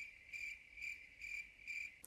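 Crickets chirping faintly, a high steady pitch repeating about twice a second. It is the comic 'crickets' sound effect for an awkward silence after an unanswered question.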